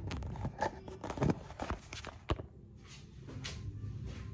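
Handling knocks and clicks as a phone camera is set down and propped among plastic and glass bottles on a bathroom counter: several sharp taps and bumps in the first couple of seconds, then quieter rustling.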